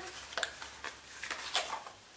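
A few light clicks and taps of a small skincare bottle and its packaging being handled.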